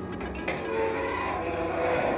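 Sheep crowded in a metal handling chute: a sharp metal clank about half a second in, followed by a short sheep bleat over the shuffling of the animals against the rails.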